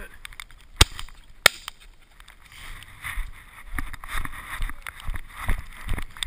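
Two shotgun shots from a double-barrelled shotgun fired at a flushing pheasant, a little under a second apart and close to the microphone. Irregular low thumps and rustling follow.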